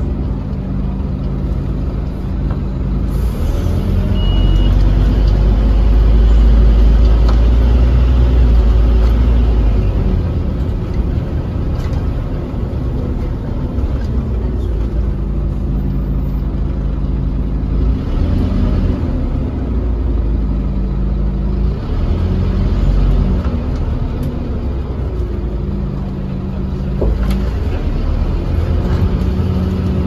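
London bus's diesel engine and drivetrain heard from inside the passenger cabin as the bus drives in traffic. There is a steady low rumble, strongest for several seconds after it pulls away, and the engine note rises and falls several times as the bus speeds up and slows down.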